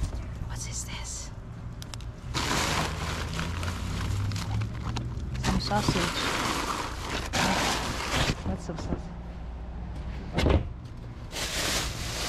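Plastic bin bags rustling and crinkling as rubbish is rummaged through inside a wheelie bin, in two long stretches, over a steady low hum. A single sharp thump comes about two thirds of the way through.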